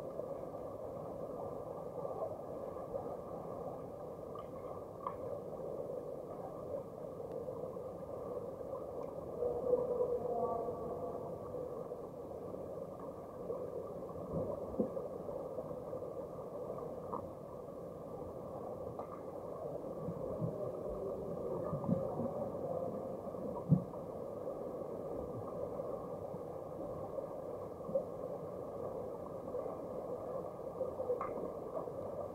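Underwater sound of an underwater hockey game, muffled through a camera's waterproof housing: a dull, steady wash of water noise from swimmers and fins, with scattered knocks and thumps. The sharpest knock comes about three-quarters of the way through.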